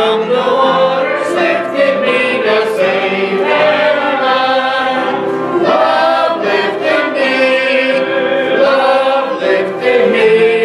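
A church congregation singing a hymn together in long held phrases, led by a man singing into the pulpit microphone.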